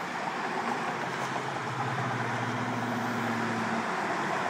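Road traffic passing on a multi-lane boulevard: a steady rush of tyre noise, joined about halfway by a vehicle's steady engine hum that stops just before the end.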